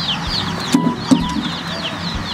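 Chickens: a steady chorus of short, high peeping calls, with a few lower clucks about a second in.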